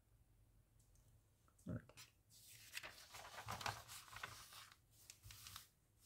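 Glossy magazine pages being handled and turned: a soft thump about two seconds in, then a few seconds of paper rustling and sliding with small crackles, and a brief rustle again at the end.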